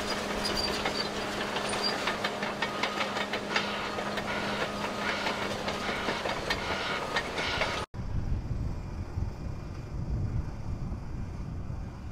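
Caterpillar D6T XL crawler dozer working close by: its diesel engine runs with a steady hum under a dense clatter of steel tracks. About eight seconds in the sound cuts suddenly to a duller low rumble.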